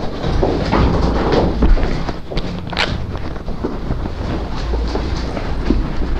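Rustling, handling and knocking of people moving about a room, over a steady low rumble, with one sharp knock just before the middle.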